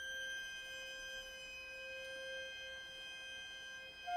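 Quiet classical chamber music: an instrumental ensemble holding soft, steady high notes as a sustained chord, without vibrato.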